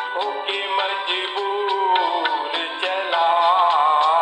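Hindi film song from 1970: a melody line over orchestral accompaniment, thin with no deep bass, growing louder about three seconds in.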